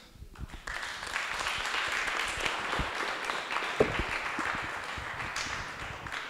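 Audience applauding, beginning about half a second in and dying away near the end, with a single knock partway through.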